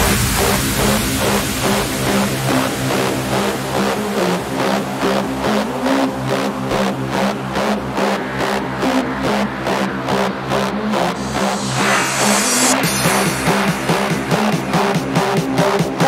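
Fast Hands Up electronic dance track at about 140 BPM. The heavy kick drum thins out just before it, leaving sustained synth chords over evenly spaced drum hits that grow denser, like a build-up.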